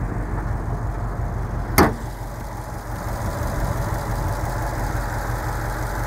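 2017 Subaru WRX STI's 2.5-litre turbocharged flat-four engine idling steadily, with one sharp click about two seconds in.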